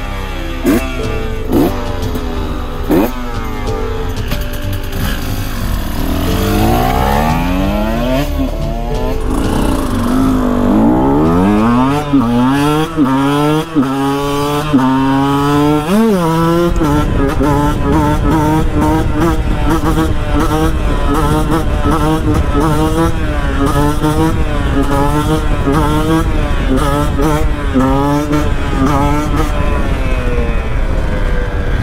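KTM 125 EXC two-stroke single-cylinder engine. It starts with a few short throttle blips at standstill, then pulls hard up through the gears, the pitch climbing and dropping back at each upshift. From a little past halfway the revs rise and fall in quick, even waves as the throttle is worked to hold a wheelie.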